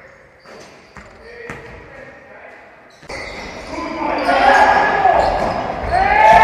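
Faint and sparse at first, with a few light ticks. About three seconds in, the echoing sound of an indoor basketball game starts suddenly and builds: a ball bouncing on the hardwood court and players' voices ringing around a large hall.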